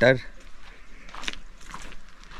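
Soft scuffs and rustles of a person walking on a path while holding a camera, with a couple of light knocks about a second in and near the end. The last syllable of a spoken phrase trails off at the very start.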